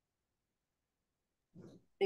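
Near silence: room tone, with one faint short sound near the end.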